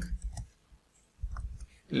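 A few scattered, separate clicks from a computer keyboard and mouse as text is selected and typed, with a soft low rumble in the last second.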